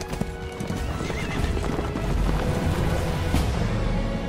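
Several horses riding off at speed, with dense hoofbeats on a dirt trail and a horse whinnying about a second in.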